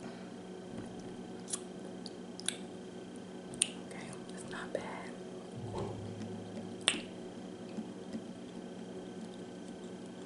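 Close-miked sipping of a mimosa from a champagne flute: a few sharp lip smacks and mouth clicks, the loudest about three and a half and seven seconds in, with a brief hummed voice sound near the middle. A steady low electrical hum sits underneath.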